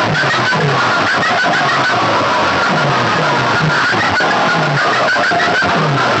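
Music blasting at full volume from a stack of horn loudspeakers on a DJ sound box, harsh and distorted, driven by a repeating beat of short falling bass notes about twice a second.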